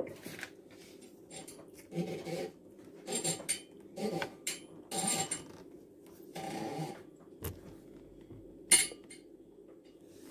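A ceramic cake plate being handled on a kitchen counter: about six short, soft clinks and rubs spread over the ten seconds, the sharpest near the end, over a low steady room hum.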